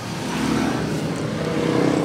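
A motor vehicle engine running: a steady low hum whose tone grows a little stronger and rises slightly in pitch in the second half.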